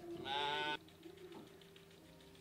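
A sheep bleating once, a loud call of about half a second.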